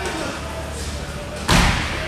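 A pair of 50 lb dumbbells landing on the rubber gym floor: one heavy thud about one and a half seconds in, with a short ring in the hall.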